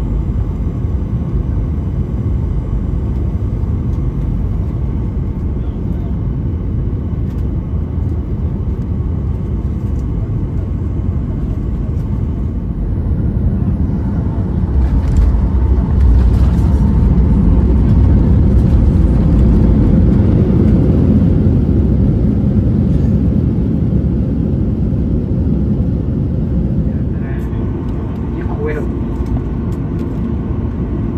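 Cabin noise of a Boeing 737 landing: a steady rumble of engines and airflow that grows louder for several seconds after touchdown about halfway through, then eases as the plane slows on the runway.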